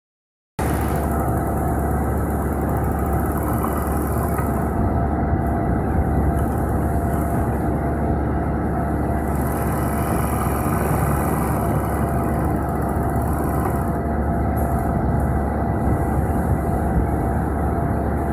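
Single-thread chain-stitch fur sewing machine running steadily at high speed, overcasting the edge of a fabric strip. It starts about half a second in and keeps an even pitch and level.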